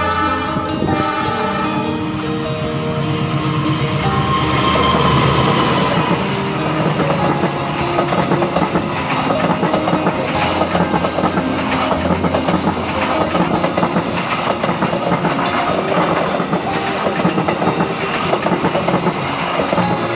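An Indonesian diesel-electric locomotive hauling a passenger train passes close by, loudest about five seconds in. The carriages follow with a steady rattle and a quick run of wheel clicks over the rail joints.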